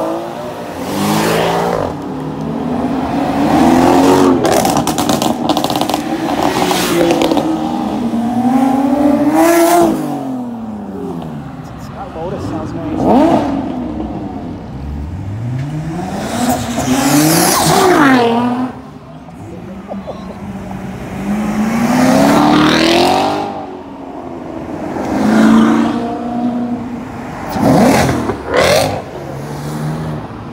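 Sports car engines revving hard and accelerating away one after another, each pass a sweep of engine pitch that rises and then falls as the car pulls away, repeating every few seconds.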